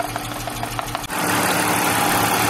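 BMW M52TU inline-six idling while misfiring on cylinder two, with light regular ticks. About a second in, the sound changes abruptly to a louder, hissier idle.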